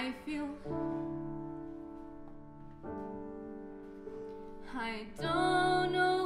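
A musical-theatre ballad: a grand piano plays held chords, struck about every two seconds and fading away between strikes. A woman's solo voice sings with vibrato and becomes the loudest sound from about five seconds in.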